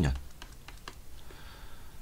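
A few light, irregular clicks and taps of a stylus on a tablet while handwriting numbers.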